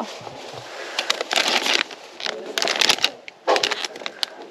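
Crinkling of a clear plastic bag of ribbon candy as it is picked up and handled, in several short rustling bursts.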